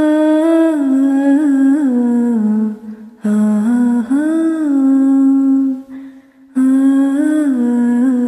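A woman's voice humming a slow, wordless melody in a vocal-only nasheed, with no instruments. It comes in three phrases with short breaks between them, the pitch gliding and turning within each phrase.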